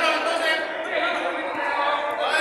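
Several men's voices shouting and talking over one another during a small-sided football game, with the thump of the ball being played.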